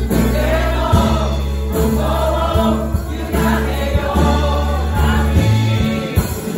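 Live worship band of keyboard, electric guitar and drums playing a worship song while the singers and congregation sing together in chorus.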